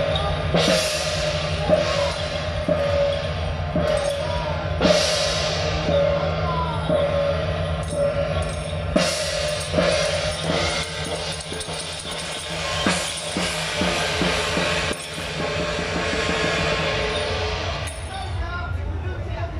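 Taiwanese temple-procession percussion: drum beats with large hand cymbals crashing, the loudest crashes a few seconds apart, over a steady held note.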